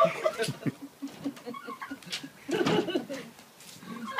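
A displaying tom turkey calling as it goes after people, with quiet laughter.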